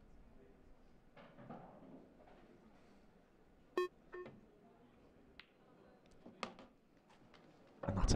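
An electronic shot-clock beep sounds twice about four seconds in, as the clock counts down past ten seconds. Later come a few soft clicks of the cue and balls as the shot is played.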